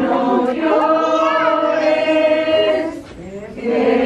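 A group of people singing together, a devotional song for the Niño Dios figure, with no clear instrumental backing. The singing dips briefly about three seconds in, then carries on.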